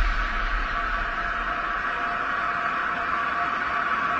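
Steady static-like hiss with faint held tones, the sustained tail of a logo-intro sound effect; the low rumble left from the preceding boom fades out in the first second.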